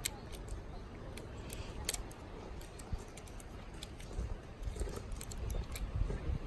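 Scattered small clicks and taps from hands handling a manual 35 mm film SLR while loading a new roll of film, over a low steady rumble.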